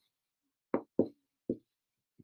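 Three short knocks of a felt-tip marker against a paper pad as letters are written, the first two close together and the third half a second later.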